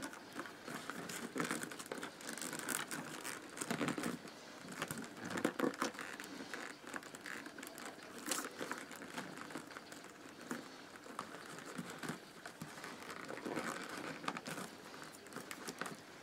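Rolled newspaper tubes rustling and crinkling as a tube end is threaded through the woven rows and pulled tight, with small irregular clicks and scrapes of the paper strands.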